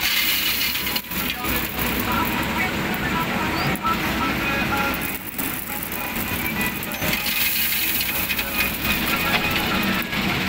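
JCB 3DX backhoe loader's diesel engine running steadily, with a few brief knocks about one, four and five seconds in.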